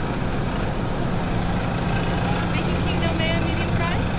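Car engine running at low revs, a steady low hum heard from inside the cabin.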